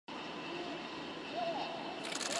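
Steady background hiss with a faint, distant voice calling out in short phrases, before any rocket engine noise.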